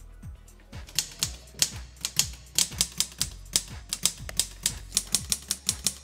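Typewriter key-clicking sound effect, a quick irregular run of sharp clicks starting about a second in, over background music with a steady beat.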